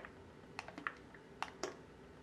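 Quiet, irregular clicks and smacks, several a second, from someone eating a thick slippery elm paste out of a glass mug.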